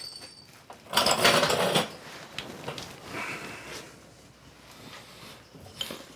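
Workshop handling noise: a rough scraping rustle lasting under a second near the start, fainter rubbing after it, and a light click near the end.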